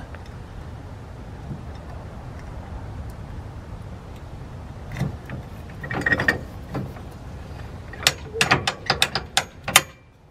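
Clicks and ratcheting of a cast-zinc Master Lock trailer coupler lock being worked into its locked position: one click about halfway through, a short cluster a second later, and a quick run of clicks in the last two seconds.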